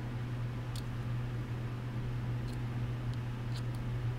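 Steady low hum of room noise with a few faint, light ticks, about four in all, as a small magnet-wire toroid and its leads are handled.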